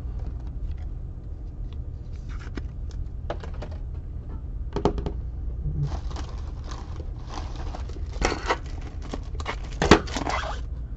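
Trading cards and their packaging being handled: scattered light clicks and taps, then rustling and crinkling of plastic or foil wrappers from about six seconds in, over a steady low hum.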